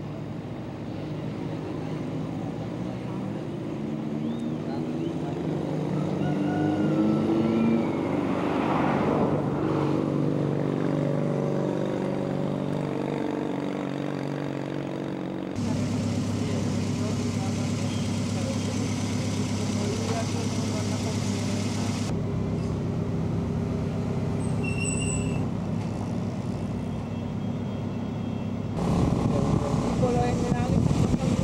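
Car engine running, heard from inside the car, its pitch rising as it speeds up a few seconds in. After an abrupt cut a little past halfway it runs on at a steadier pitch.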